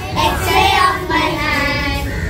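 A group of young children singing a phonics alphabet song together.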